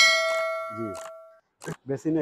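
A stainless steel double-bowl kitchen sink struck by hand, ringing with several clear metallic tones that fade out over about a second and a half.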